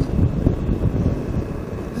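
Motorcycle riding at highway speed, picked up by a helmet intercom microphone: steady wind rush with a low, uneven rumble of engine and road.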